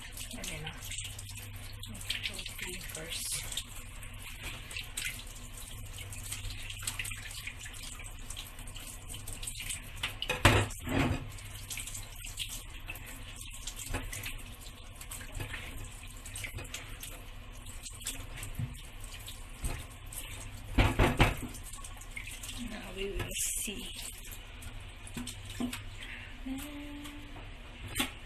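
Kitchen tap running steadily into a stainless steel sink as a whole fish is rinsed and rubbed by hand, then a wooden chopping board is rinsed under the stream. Scattered small clicks and two loud clusters of knocks, one about ten seconds in and one about twenty-one seconds in.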